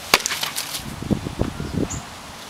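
A hand-held war club smashing into a hollow carved jack-o-lantern: one sharp smack just after the start, followed by a run of duller low thuds over the next second.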